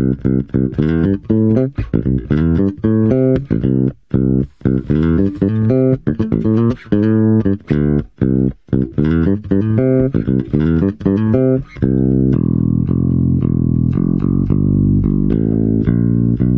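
Spector NS-2 electric bass with active PJ pickups, the P pickup reversed, playing a riff of quick separate notes, then letting a long note ring for the last four seconds. The tone is really clean, with no hum or noise.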